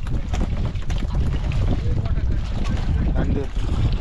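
Fishing boat's engine running with a steady low rumble, wind buffeting the microphone, and frequent wet slaps and knocks of fish being picked out of the catch pile on deck.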